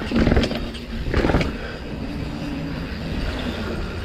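Mountain bike's knobby tyres rolling fast on a concrete path, with wind rushing over the handlebar-mounted microphone. Two louder rough bursts come in the first second and a half, then the noise settles into a steadier rumble.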